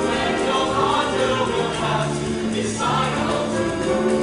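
Mixed-voice show choir singing in parts, several held notes sounding at once.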